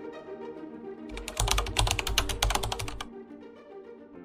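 A coin wobbling to rest on a hard tabletop, rattling rapidly for about two seconds as it settles. Background music plays underneath.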